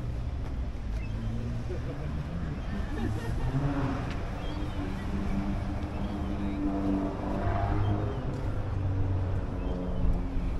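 A car engine running steadily at low revs, with people talking in the background.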